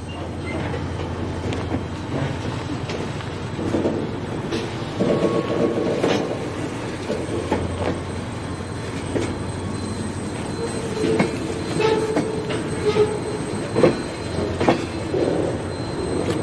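A freight train's boxcars and lumber-loaded flatcars rolling past, steel wheels on the rails making a steady rumble with scattered clicks and knocks and short wheel squeals now and then.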